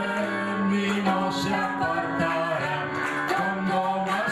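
A man and a woman singing a duet into microphones over recorded backing music with a steady beat.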